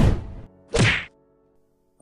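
Two sharp transition sound effects hitting with the animated title card: a loud whack right at the start, then a second brief hit less than a second later.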